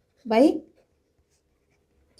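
A ballpoint pen writing on paper, heard faintly along with a single spoken word a quarter second in. The rest is near silence.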